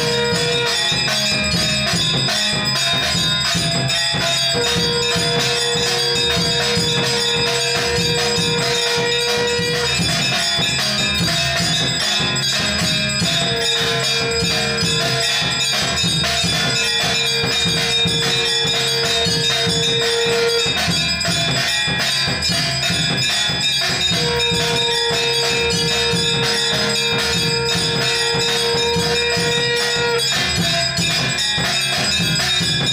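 Hindu temple aarti: bells ring and clang continuously in a fast, dense rhythm. A long, steady tone sounds three times over it, each time for about six seconds with a short pause between.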